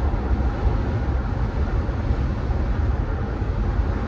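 Steady road and engine noise heard inside a moving vehicle's cabin: an even low rumble with a light hiss over it.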